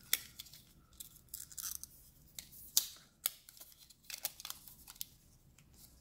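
Irregular light plastic clicks and short scrapes from a hinged plastic 35mm film holder being handled and opened.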